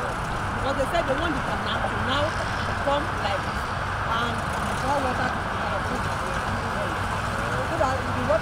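Steady outdoor background noise of distant road traffic, with faint voices of people talking through it.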